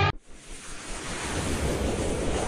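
Music cuts off abruptly, then a hissing whoosh sound effect swells up, with a rising sweep tone coming in during the second half: a transition riser leading into a logo animation.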